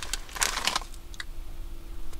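Foil Doritos chip bag crinkling as a hand rummages inside it, for under a second, followed by faint scattered clicks.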